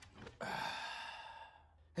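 A man's long, strained sigh with voice in it, lasting about a second and fading out: the effortful exhale of a man bench-pressing a barbell.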